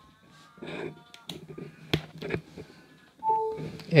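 A couple of small plastic clicks as a Lightning plug goes into an iPhone, then, about three seconds in, a short electronic chime: the iPhone's power-connected sound as it starts charging from the phone it is cabled to.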